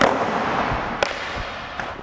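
A skateboard slaps down hard on smooth concrete as a big-flip attempt is landed, then its wheels roll on along the floor, fading, with a second sharp clack about a second in.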